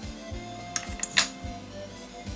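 Quiet background music, with three sharp clicks a little before and after the middle: scissors snipping off the excess black hackle feather at the hook.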